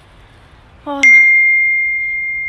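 A single bright bell ding about a second in: one high, clear tone that starts sharply and rings on steadily, louder than the voice around it.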